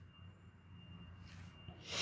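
A quiet pause with faint hiss and a thin steady high tone; near the end, a person draws in a sharp breath just before speaking.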